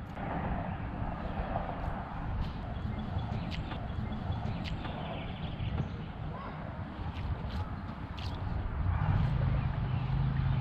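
Outdoor ambience on a fishing boat: a steady low rumble of wind on the microphone with a handful of short, light clicks and knocks scattered through. A low steady hum comes in near the end.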